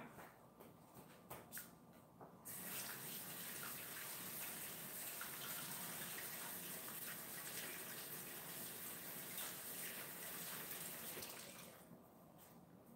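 Water running steadily from a tap, faint, starting about two seconds in and stopping just before the end. A few light clicks come before it.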